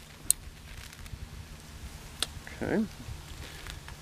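Metal climbing hardware clicking as an ISC / Singing Tree Rope Wrench ZK2 is worked onto the rope: one sharp click shortly after the start and another a little over two seconds in.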